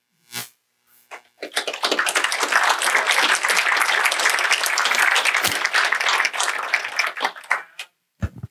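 Audience applauding: a dense patter of many hands clapping that starts about a second and a half in, holds steady, and thins out near the end.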